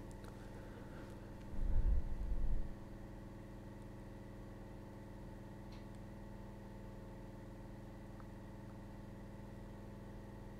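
A steady low hum made of several held tones, with a deeper rumble lasting about a second near the start.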